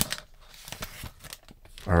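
Light crinkling of a foil trading-card pack wrapper and the rustle of a stack of cards sliding out of it: a scatter of faint clicks and rustles.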